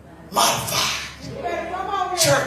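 A woman preaching through a microphone: a sudden loud, breathy outburst about a third of a second in, then her voice carries on in chanted, drawn-out speech.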